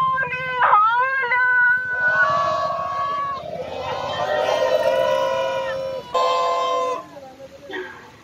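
Protesters chanting a slogan: a lead voice, then many voices together in long drawn-out notes, with one more held call near the end.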